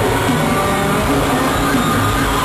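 Live rock band playing full-out in an arena, heard from the stands: a dense, steady wash of amplified music with a strong low drone and no break.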